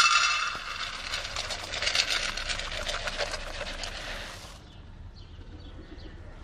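Dry chicken feed pellets poured into a shallow metal pan, a dense rattle of pellets striking the metal that is loudest as the pour begins and stops a little over four seconds in.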